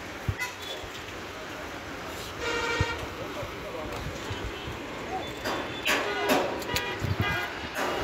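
A vehicle horn toots once, briefly, about two and a half seconds in, over steady background noise. Voices follow later.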